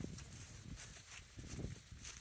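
Faint low wind rumble on the microphone, with a few soft footsteps on grass.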